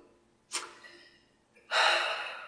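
A man breathing close to the microphone: a short, sharp breath about half a second in, then a louder, longer breath near the end that fades over about a second.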